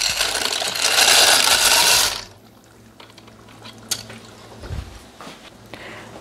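Dry short pasta poured from a glass bowl into the Thermomix's steel bowl of hot tomato-and-tuna liquid: a loud, steady rush for about two seconds that stops sharply. A few faint knocks and a soft thump follow.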